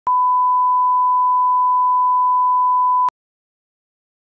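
Colour-bars 1 kHz reference test tone: one steady, unchanging beep about three seconds long, starting and cutting off with a click.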